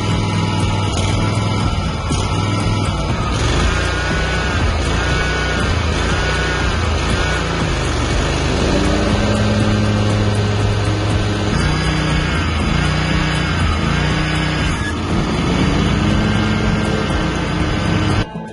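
Kawasaki V-twin engine of a Scag 61-inch walk-behind mower running steadily at about half throttle, with background music laid over it.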